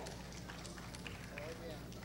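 Low room tone of a large hall: a steady low electrical hum with faint, distant murmuring voices and a few soft clicks.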